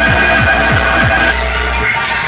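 A DJ sound system of speaker stacks and horn loudspeakers plays at high volume. It repeats a low pitch sweep that falls sharply about three times a second, over a steady deep hum and high ringing tones. The deep hum drops out just before the end.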